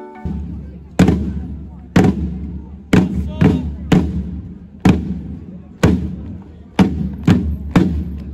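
A group of rope-tensioned field drums struck together in a slow, heavy beat, about one stroke a second, with a quicker extra stroke now and then near the middle and near the end.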